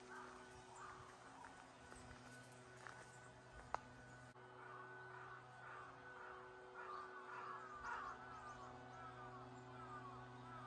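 Faint outdoor ambience with repeated short bird calls, growing more frequent in the second half, over a faint steady hum. A single sharp click sounds a little before the midpoint.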